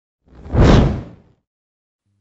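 Whoosh transition sound effect: a single rush of noise that swells and dies away within about a second.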